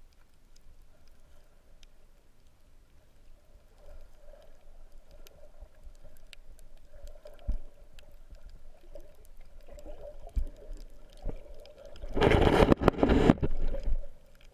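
Muffled underwater sound picked up by a camera in a waterproof housing: a dull hush with faint scattered clicks and a faint steady hum, then a loud rush of splashing water about twelve seconds in, lasting over a second.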